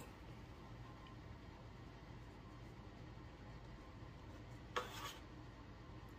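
Quiet kitchen room tone with faint hand sounds of soft biscuit dough being patted and shaped between floured palms, over a low steady hum. A brief soft rub sounds about five seconds in.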